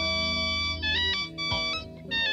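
Organ playing sustained chords, with the upper notes stepping from pitch to pitch. The low bass note drops out about halfway through, and the sound thins briefly near the end.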